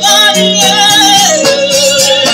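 Live band of drum kit, electric bass and electric guitar playing an instrumental passage, with a sustained, wavering lead note that slides down in pitch about two-thirds of the way through.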